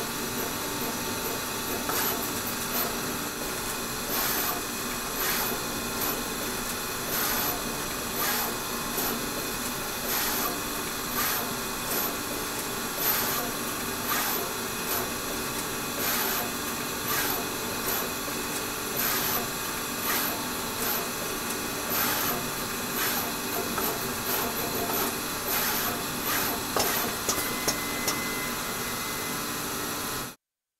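Samsung surface-mount pick-and-place machine running: a steady machine hum with short hissing pulses about once a second as the placement head works across the board panel, and a few sharper clicks near the end.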